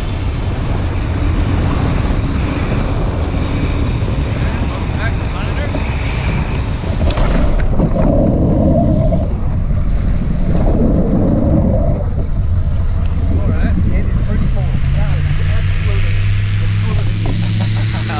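Wind rushing over the microphone of a wing-mounted camera as a tandem hang glider glides in low and lands on grass, heaviest around the touchdown about halfway through. A low steady hum comes in over the last few seconds.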